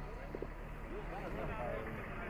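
Men's voices talking in the background over a steady low rumble.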